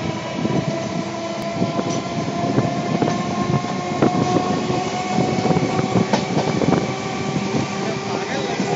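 Running noise of a moving electric passenger train, heard from its open doorway: wheels clicking irregularly over the rails under a steady rumble, with a motor whine that rises slowly in pitch as the train picks up speed.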